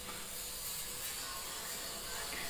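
Steady hiss of background noise, room tone in a pause between spoken phrases.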